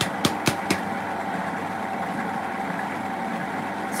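Cheap electric stand mixer running steadily, its beater turning through a bowl of bicarb soda mix, with a few sharp clicks in the first second.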